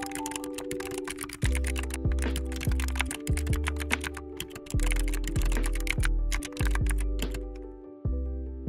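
Rapid keyboard typing clicks, used as a sound effect, over background music whose deep bass notes come in about a second and a half in. The typing stops shortly before the end.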